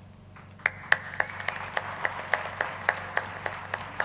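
Audience clapping in unison, a steady beat of about three and a half claps a second over a wash of scattered applause, starting about half a second in.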